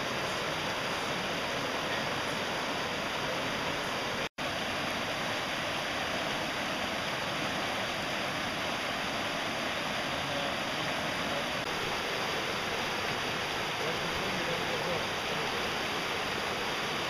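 Steady rush of a fast mountain creek running over boulders and small rapids. The sound drops out for a split second about four seconds in.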